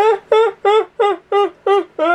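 A woman laughing hard in six quick bursts, about three a second, each "ha" falling in pitch.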